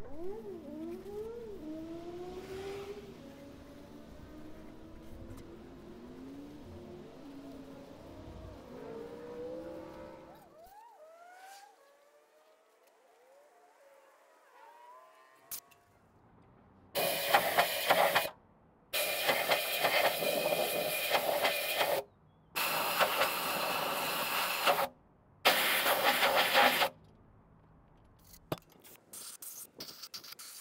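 Compressed-air blow gun blasting dust and rust out of an engine block's cylinders: four loud hissing blasts of one to three seconds each, in the second half, with short breaks between them.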